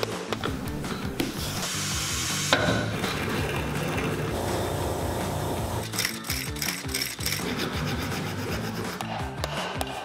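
Shoe-repair work under background music: hammer taps on a leather sole at the start and scraping, rasp-like sounds in the first few seconds, then from about six seconds in a rapid run of clicks from a sole-stitching machine sewing the welt.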